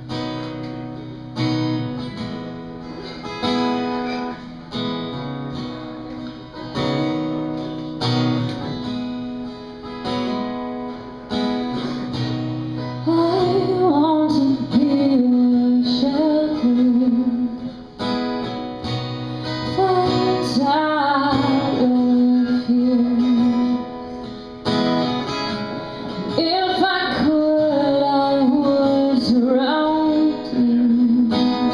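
A live song on acoustic guitar: chords played alone at first, then a woman's singing voice comes in a little before halfway and carries on over the guitar.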